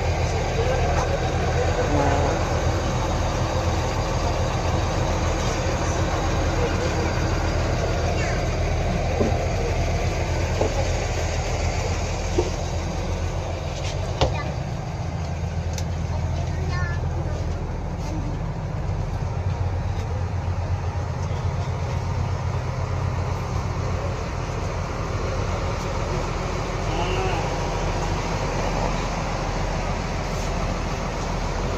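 A parked coach bus's diesel engine idling steadily, heard from inside the passenger cabin, with a few short knocks.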